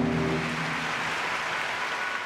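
An orchestra's held chord fades away, and audience applause follows as an even clatter of clapping.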